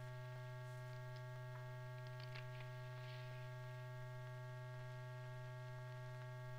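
Steady low electrical hum with a few faint scattered clicks: the background noise of an old film's soundtrack.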